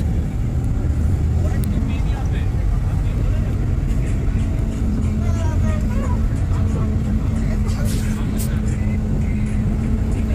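Steady low rumble of a bus's engine and road noise heard from inside the moving bus, with a constant low hum. Faint voices can be heard in the background around the middle.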